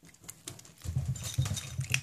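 A small bichon-poodle puppy chewing food: a run of small crunchy clicks, with a low rumble joining in about a second in.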